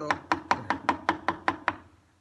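Wooden mallet striking a wood chisel driven into a wooden board, a quick even run of about nine blows, about five a second, that stops shortly before the end.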